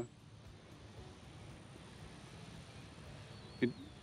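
Faint, steady outdoor background noise with no distinct event in it; a single short spoken word comes near the end.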